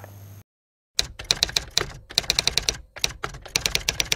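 Typing sound effect: rapid keystroke clicks, several a second with a couple of brief pauses, starting about a second in, as on-screen text is typed out.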